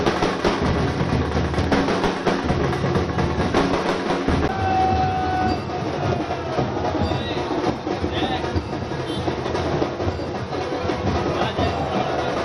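Loud drum-led festive music runs on. About four and a half seconds in, a held high tone sounds over it for about a second.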